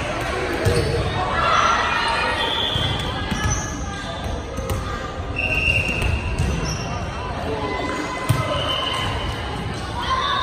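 Volleyballs bouncing on a hardwood gym floor, with girls' voices echoing around the gymnasium and one sharp impact about eight seconds in.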